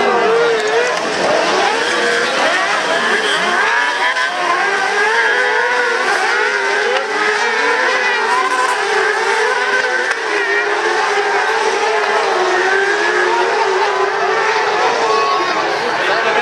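Several crosscarts of the up-to-600 cc class racing together on a dirt track, their high-revving engines overlapping in a steady loud din, each engine's pitch rising and falling continuously as the drivers work the throttle.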